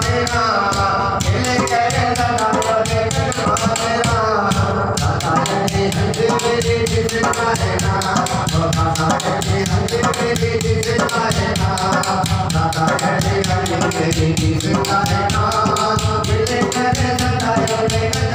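Male voice singing a Sufi devotional kalam through a microphone, accompanied by a hand drum played with the palms in a fast, steady beat.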